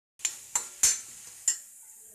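A metal spoon stirs mashed tapioca in a black iron kadai: four sharp clinks and scrapes against the pan in the first second and a half, the third the loudest. A faint steady hiss runs under them.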